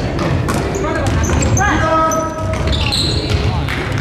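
Basketball game in an echoing gym: the ball bouncing on the hardwood floor, short high sneaker squeaks and voices shouting, with one long call a little under halfway through.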